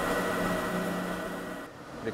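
Motor-driven knife-sharpening wheel running steadily, a hum with a few fixed tones over a grinding noise, which cuts off suddenly near the end.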